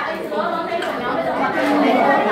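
Speech: a woman's voice talking, with chatter from a room full of students.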